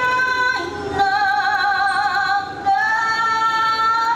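A woman singing long held notes with vibrato into a microphone, stepping down in pitch about half a second in and up again near three seconds.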